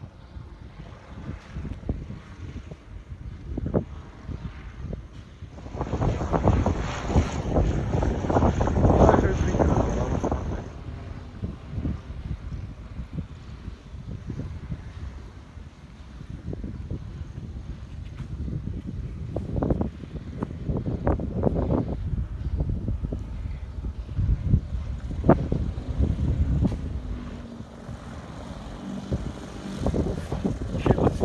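Wind buffeting the microphone in gusts, loudest about six to ten seconds in.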